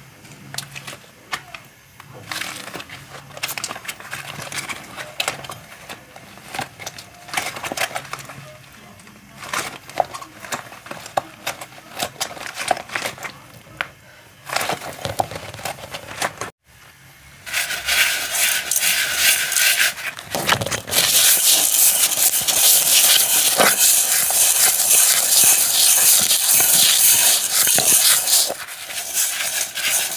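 Rubber-gloved hands squeezing a tube of paste into a steel pot of dry grains and then kneading and rubbing the grains, a crackling, crinkling rustle with scattered clicks. About halfway through, the crackling rustle becomes much louder and dense.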